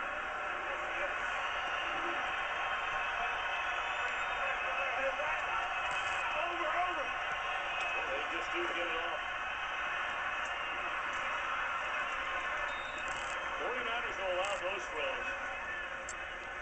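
Football game TV broadcast audio, recorded off the television's speaker: a steady stadium crowd din with indistinct voices in it.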